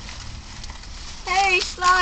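Faint outdoor background noise, then about a second and a quarter in a woman starts calling out in a high, sing-song voice, the start of calling the name "Cooper".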